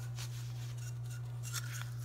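Faint, scattered rustles and crinkles from things being handled, more of them in the second half, over a steady low hum.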